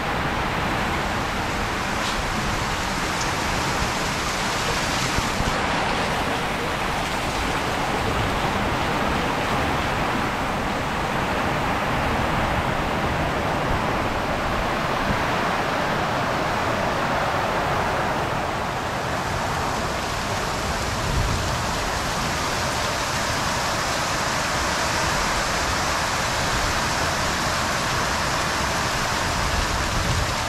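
Heavy rain pouring down in a storm: a loud, steady hiss of rain on the ground, unchanging throughout, with a low uneven rumble underneath.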